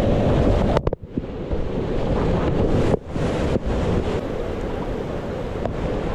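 Rushing whitewater churning and splashing around a kayak running a rapid, picked up close by a GoPro camera's microphone, loud and steady with a brief dropout about a second in.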